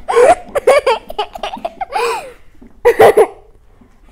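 A young boy laughing hard in a string of loud bursts that stop about three and a half seconds in.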